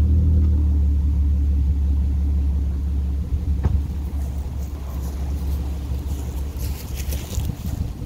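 Audi S4's supercharged 3.0 V6 idling through an AWE Touring exhaust, with a steady low hum. The revs ease down at the start, and it gets a little quieter about three seconds in.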